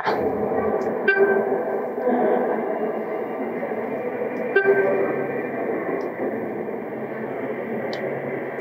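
Recorded sound clips playing back together through an interactive exhibit table's built-in speakers, a dense, steady mix that sounds thin and boxed, with no high treble. A pitched note starts about a second in and again about four and a half seconds in.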